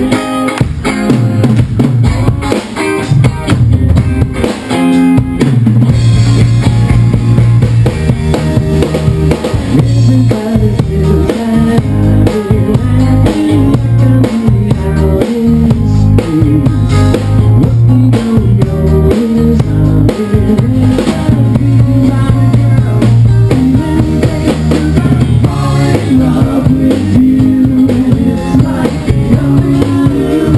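A live power-pop rock band playing loudly: a drum kit with bass drum and snare to the fore, over electric bass and electric guitars.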